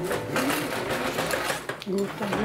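A roller shutter being hauled up by its webbing pull strap, its slats rattling rapidly as they wind onto the roller; a woman's voice starts near the end.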